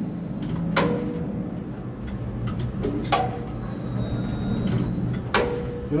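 Tower crane running while it moves a concrete skip: a steady low hum, broken by three sharp clicks about two seconds apart.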